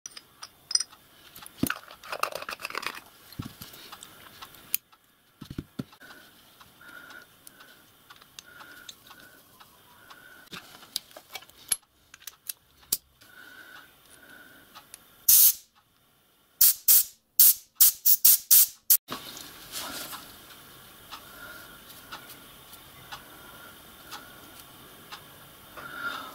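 A brass whistle push valve from a miniature live steam locomotive being tested with compressed air: one short hiss, then a quick run of about seven brief bursts as the plunger is pushed and let go. The valve now shuts off cleanly, its leak cured by descaling, which the owner puts down to built-up limescale and debris. Light clinks and handling noises come earlier.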